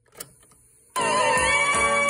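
The play key of a National Panasonic RX-5700 cassette boombox clicks down, and just under a second later recorded music starts abruptly and loudly from the tape through its speaker.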